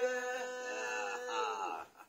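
A voice singing one long drawn-out note that wavers slightly and stops just before the end.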